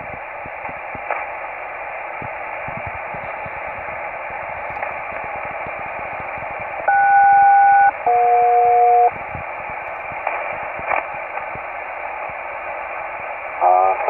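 Single-sideband receiver hiss and static crackle on an HF aeronautical channel, heard through a Kenwood TS-480. About seven seconds in, a SELCAL call sounds: two steady tones together for about a second, a brief gap, then a second pair of lower tones for about a second. It is the ground station's selective-call signal alerting one aircraft's crew.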